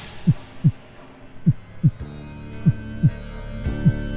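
A sudden crash-like hit, then a slow heartbeat sound effect: pairs of short low thumps, each falling slightly in pitch, about one pair a second. A dark music drone swells in under the beats from about halfway through.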